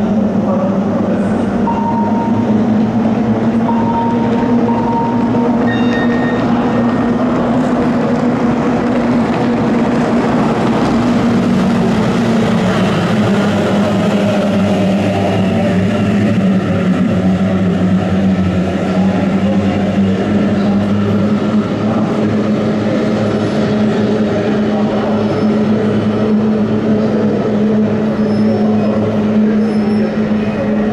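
A pack of kyotei racing boats' two-stroke outboard motors running together at racing speed. It is a steady engine note that dips slightly in pitch partway through.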